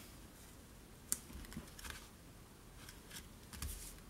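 Paper and card being handled on a table: a sharp click about a second in, then soft, faint rustling as paper pieces are pressed down and the card is moved.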